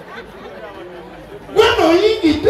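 Low murmur of voices, then a loud voice through the stage microphone cuts in near the end.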